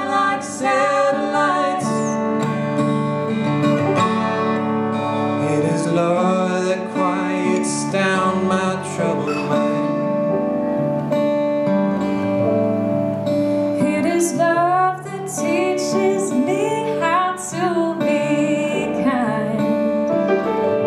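Acoustic guitar and grand piano playing a slow song together, with sustained chords and a melodic line that bends and wavers in pitch.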